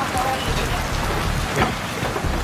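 Steady heavy rain falling on a wet deck and garden, with one sharper knock about one and a half seconds in.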